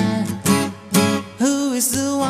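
Music: acoustic guitar strummed in a folk-rock song. Two sharp strokes come about half a second and a second in, each followed by a brief drop in level, then held notes ring out.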